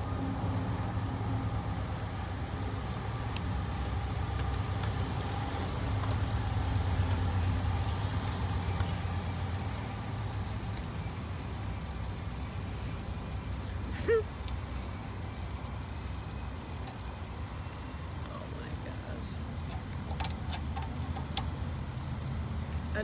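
Steady low rumble of distant road traffic, swelling about six to eight seconds in, with one short sharp click about fourteen seconds in.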